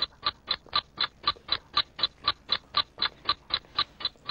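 A ticking countdown-timer sound effect: short, even ticks about four a second. It counts down the one minute a team has to prepare its answer.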